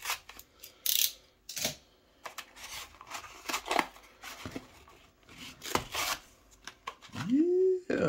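Small scissors cutting through the thick cardboard backing of a toy blister-pack card in a series of separate snips and crunches, with the card tearing. Near the end comes a short rising vocal sound.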